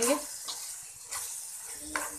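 Plastic spoon stirring minced chicken with green chillies and coriander in an aluminium kadai over the heat: soft scraping and shuffling of the mince, with a light frying sizzle.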